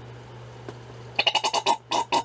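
A conditioner bottle being squeezed, sputtering out air and cream in a rapid string of short pulses that starts a little past a second in.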